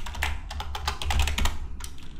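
Typing on a computer keyboard: a quick, irregular run of key clicks over a low steady hum.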